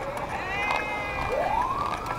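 A siren winding up: its pitch rises steeply a little past halfway, then levels off and holds high.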